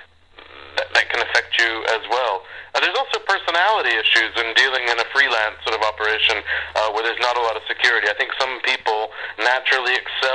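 Speech only: a man talking steadily.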